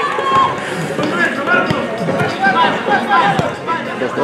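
Overlapping shouts and chatter of spectators and players at a small-sided football match, with a few short thuds, the sharpest near the start, about halfway and near the end.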